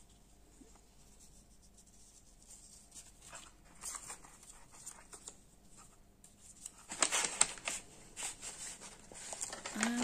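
Paper handling: a few soft rustles, then from about seven seconds in a burst of crisp crinkling as a thin translucent paper envelope packed with paper ephemera is picked up and opened.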